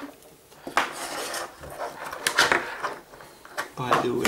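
A few light knocks and clinks from small tools and a circuit board being handled on a tabletop, as a soldering iron is picked up.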